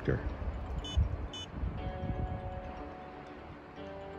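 Two short electronic beeps about half a second apart over a low rumbling noise. Then soft background music with held chords comes in a little before the middle.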